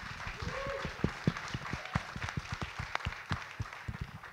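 Audience applause in an auditorium: many people clapping irregularly, fading slightly toward the end.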